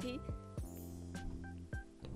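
Background music bed of sustained electronic tones in a pause of the voice, with three short high beeps in the second half.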